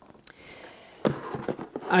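Rustling and handling noise as a person bends down and lifts a cardboard product box into view, picked up on a clip-on microphone, faint at first and louder from about a second in.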